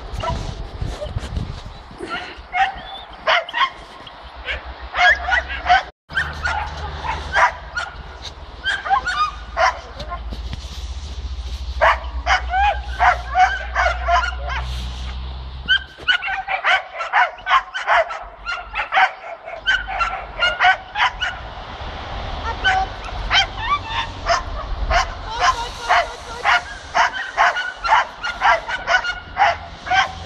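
Dogs barking and yipping over and over, in runs of short, high barks.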